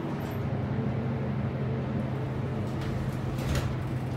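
Steady low hum of an MEI hydraulic elevator running, heard from inside the moving cab, with a few light knocks or rustles near the end.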